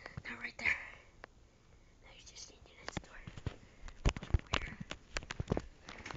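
A brief whispered voice at the start, then a quiet moment, followed by a run of irregular light knocks and clicks that grows busier toward the end.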